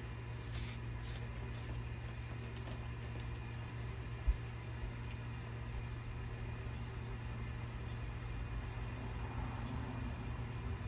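A few short hisses of a hand-pump spray bottle misting, within the first two seconds, over a steady low hum. A single low thump about four seconds in.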